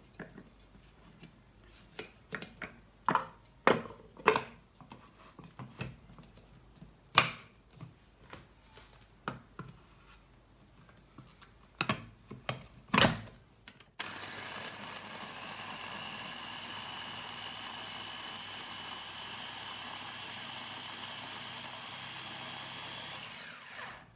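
Ninja food chopper grinding slices of bread into breadcrumbs: a steady motor whine that starts suddenly and runs about ten seconds before winding down near the end. Before it, scattered knocks and clicks of the plastic bowl and motor head being handled and fitted.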